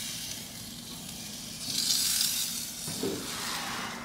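Chicken pieces sizzling on the hot grate of a gas grill, a steady hiss that grows louder for a moment about halfway through as a piece is turned.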